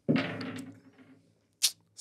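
Dice rolled onto a wooden tabletop, landing with a single sharp click near the end. It follows a brief sound that fades away in the first second.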